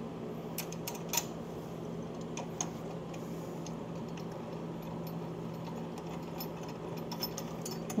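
A few light metallic clicks and taps from a chrome motorcycle highway footboard being handled against its mounting bracket, over a steady low hum.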